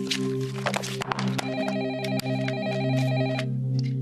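Soft background music with a telephone ringing once in the middle, a trill lasting about two seconds, over the rustle and taps of papers handled on a desk.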